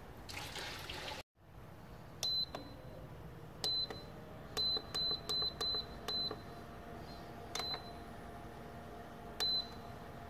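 Water poured into a metal still in the first second, then an induction cooker's control panel beeping as its buttons are pressed: about nine short, high beeps spaced unevenly. A faint steady hum from the cooker comes on a few seconds in as it starts heating.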